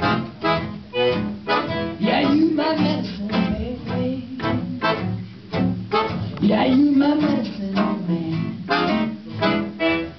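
Piano accordion and guitar playing an instrumental passage of a swing-style song, the guitar strumming a steady beat under the accordion's held notes.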